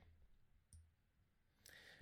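Near silence, with a single faint computer-mouse click about three-quarters of a second in.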